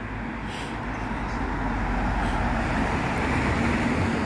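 A car approaching along the street, its road noise growing steadily louder.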